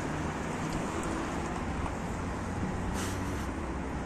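Steady hum of road traffic, an even rush with a low engine drone under it.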